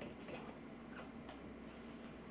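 A handful of faint, irregular light clicks over a steady low room hum.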